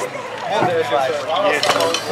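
Voices talking, with a few light clinks near the end.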